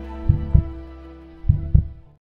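Heartbeat sound effect: two double low thumps (lub-dub), the pairs about a second apart, over a held music note, fading out at the end.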